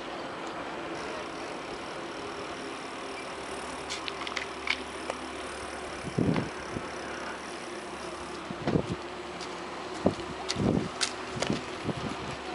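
Bicycle riding along a paved promenade, a steady rushing noise of the ride. Light clicks come near the middle, then several short low thumps in the second half.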